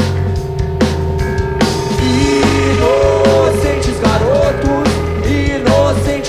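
Live rock band playing an instrumental passage: drums and bass guitar driving steadily under electric guitar, with one long held note and several short notes bent up and down.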